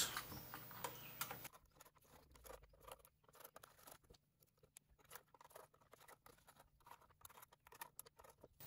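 Faint, irregular small clicks and scratches of small metal screws being lifted out of a resin vat's frame by hand.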